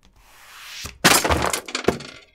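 A rising swell that breaks into a loud crash about a second in, with a shattering, glass-breaking quality, and a last sharp hit near the end.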